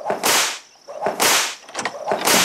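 A whip lashing and cracking repeatedly, about once a second.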